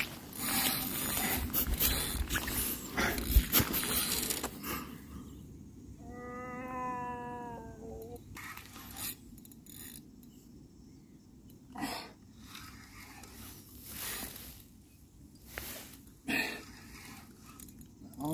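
Wind buffeting the microphone for the first few seconds. About six seconds in comes a single drawn-out call lasting about two seconds, falling slightly in pitch. After that, scattered soft knocks sound over a quieter background.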